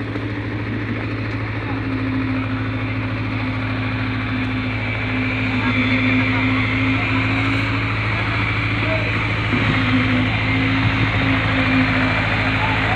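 Diesel engine of a self-loading concrete mixer running steadily while it discharges concrete down a chute into the wet well's rebar cage. The low hum is joined about two seconds in by a higher steady tone that drops out briefly and comes back.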